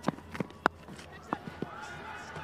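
A cricket bowler's footsteps on the run-up and delivery: a handful of sharp, irregular thuds, the loudest just over half a second in, over faint ground ambience.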